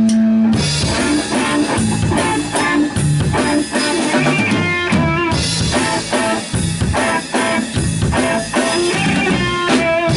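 Live rock band playing an instrumental passage: electric guitar, upright bass and drum kit, with a steady driving drum beat. A long held note cuts off about half a second in.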